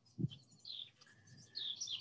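Faint bird chirps in the background: several short, high calls in a pause between speech.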